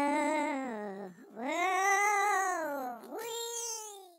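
Girls' voices singing three long, wavering, drawn-out notes, the last one rising and then falling.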